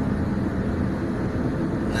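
Steady road and engine noise of a vehicle cruising on a highway, heard from inside the cabin.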